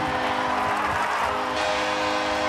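Arena music holding sustained chords over a steady wash of crowd noise, the in-arena celebration of a home goal.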